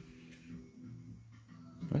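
Faint music from the Quantiloop looper app playing back a loop: a few low held notes and nothing sharp.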